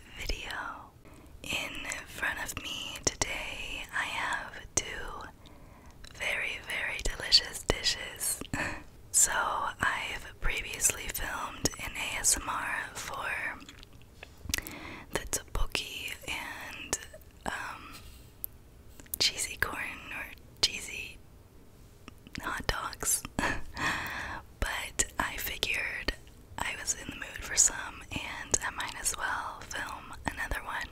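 A woman whispering into a close microphone, in short phrases separated by brief pauses.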